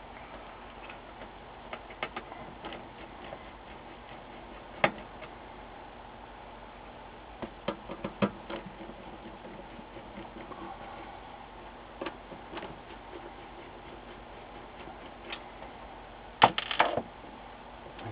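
Scattered small clicks and taps of a Phillips screwdriver and screws on a monitor's power supply board and sheet-metal chassis as the board's screws are backed out. A quick run of louder clicks comes near the end.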